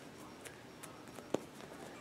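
Faint handling sounds of a freezer-chilled foam squishy toy being squeezed in the hands, with scattered light ticks and one sharper click a little past halfway.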